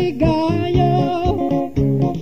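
Kapampangan pop song in a DJ remix: plucked guitar over a steady bass beat, with a held, wavering sung melody line.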